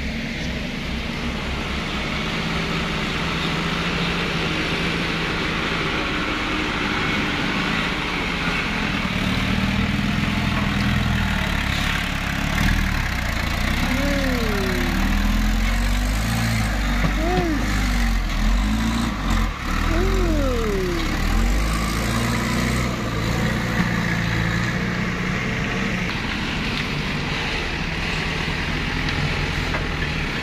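Heavy diesel engines running steadily, with one engine revved up and back down several times about halfway through, as vehicles work to get past the grounded truck.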